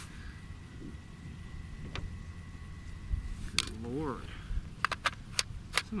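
Sharp metallic clicks and clinks of small metal objects being handled: a couple spread apart, then several in quick succession near the end.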